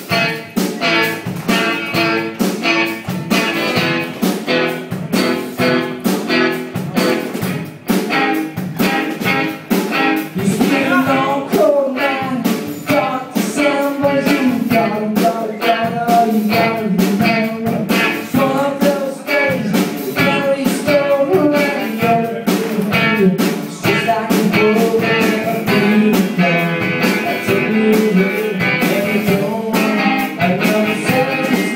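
Live solo song: an electric guitar strummed in a steady rhythm, joined about a third of the way in by a man singing.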